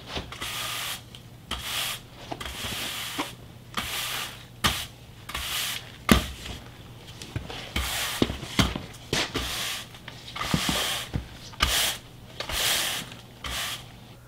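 Push broom sweeping a concrete floor: the bristles scrape in repeated strokes about once a second, with a few sharper knocks of the broom head.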